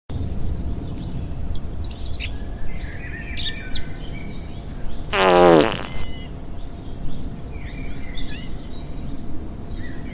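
A fart sound effect about five seconds in: a single, loud, buzzy blast about half a second long that falls in pitch. Birds chirp throughout over a low outdoor rumble.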